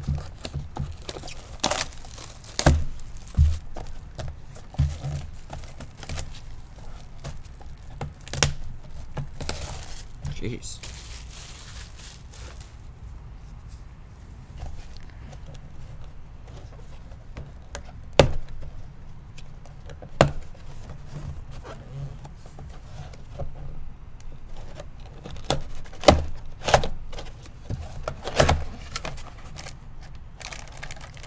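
A sealed cardboard trading-card box being handled and opened: wrapper crinkling and tearing and cardboard rubbing, with scattered sharp knocks as the box is set on the table, the loudest about 18 and 26 seconds in.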